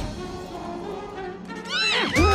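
Film score music, with a short high-pitched cry from a cartoon character near the end that rises and then falls in pitch.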